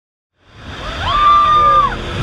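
Intro sound effect: a whoosh of noise swelling up, with a whistling tone that bends upward, holds, then drops away near the end.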